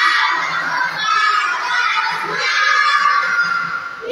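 A group of young children singing together at full voice, with long held notes.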